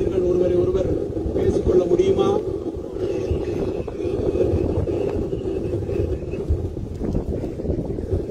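A man's voice carried over a public-address loudspeaker, with wind rumbling on the microphone.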